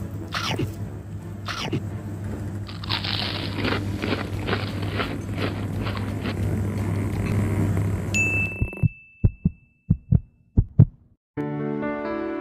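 Close-up chewing of a mouthful of baked sushi, irregular wet crackles over a steady low hum, for about nine seconds. The sound then cuts out, leaving a string of sharp thumps, and gentle music begins near the end.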